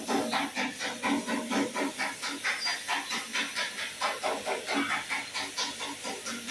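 Pressurised coolant from an overheated Lexus 5.7 V8 hissing out as steam at the radiator cap, which is being eased open under a rag. The hiss starts suddenly and spurts in quick pulses, about four or five a second.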